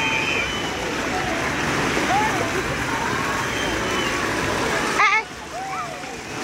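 Splash-pad fountain jets spraying and splashing water, with children's voices calling here and there. About five seconds in comes a child's short shout, and the water noise then drops away suddenly.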